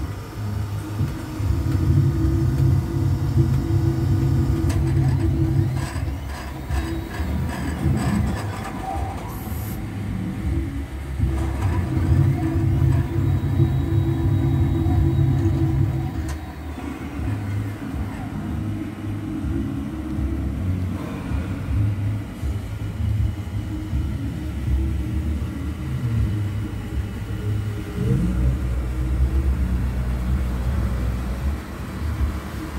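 Deep rumbling that swells and eases in long stretches of several seconds, strongest about two seconds in and again around twelve to sixteen seconds in, with faint clicks and rattles above it.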